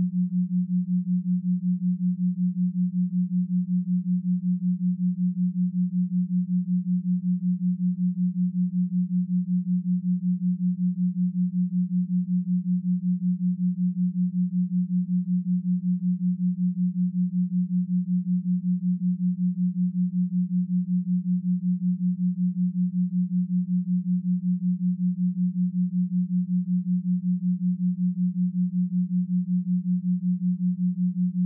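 Binaural-beat tone: one steady, low pure tone that pulses evenly in loudness several times a second, with no music or voice over it.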